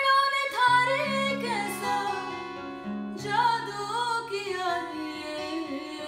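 A woman singing a slow, ornamented melody with winding vocal runs, accompanied by acoustic guitar chords.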